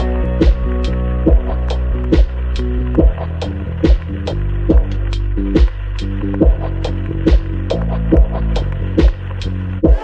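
AI-generated chillout electronic music: a deep, sustained bass drone with layered synth tones under a steady low beat a little faster than once a second.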